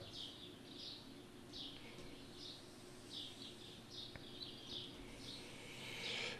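Quiet room tone with a faint steady hum, through which about a dozen short, faint, high-pitched chirps come scattered, and a single faint click about four seconds in.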